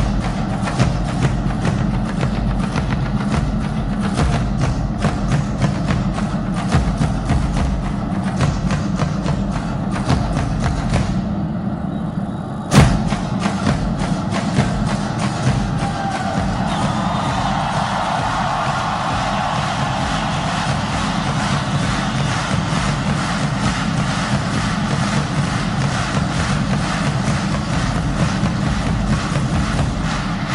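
A large double-headed bass drum carried on a strap, beaten in fast continuous strokes. It thins briefly just before a single loud stroke about 13 seconds in, then carries on.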